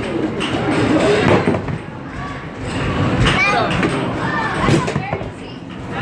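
Busy arcade din: background voices and children's calls, with a few knocks and thuds from the balls of a ball-rolling lane game.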